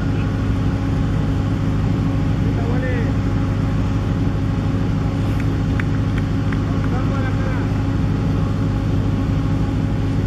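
A steady, loud low hum from a running engine-like machine, with faint distant voices and a few light ticks about six seconds in.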